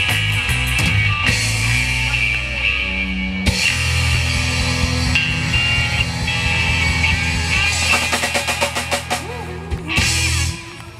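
A live country-rock band plays an instrumental stretch with no singing: drum kit, electric guitar, acoustic guitar and bass guitar. It builds to a run of rapid drum hits over the last couple of seconds, the close of the song.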